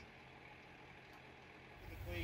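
Near silence: faint outdoor background with a low steady hum, and a low rumble rising near the end.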